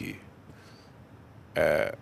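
A pause in a man's speech, broken near the end by one short, rough vocal sound, a throaty noise rather than a word.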